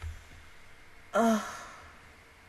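A woman's voiced sigh about a second in: a short falling tone that trails off breathily. A soft low thump comes at the very start.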